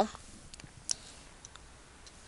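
A few faint, separate clicks against quiet room tone, the loudest just under a second in.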